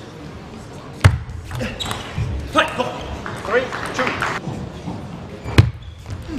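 Celluloid-free plastic table tennis ball struck by paddles and bouncing on the table during a rally, in a large hall. The sharpest hits come a little after one second and again near the end, with lighter hits between.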